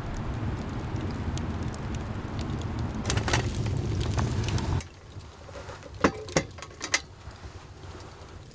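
Wood fire burning in a stone fireplace: a steady low rumble with scattered crackles that cuts off abruptly about five seconds in. A few sharp clicks follow.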